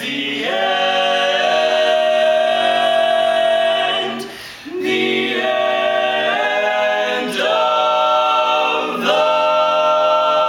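Male vocal quartet singing a cappella in harmony, holding long sustained chords that shift a few times, with a brief breath break about four seconds in.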